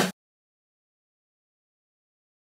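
Digital silence: a woman's voice cuts off just after the start, and nothing at all is heard after that.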